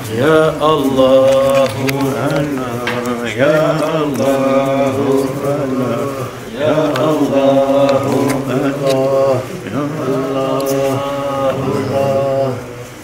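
A man's voice chanting an Islamic devotional chant, sung in long held phrases of about three seconds, each opening with a rising swoop.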